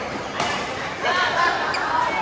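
A badminton racket strikes a shuttlecock once with a sharp crack about half a second in, followed by players' voices calling out during the rally.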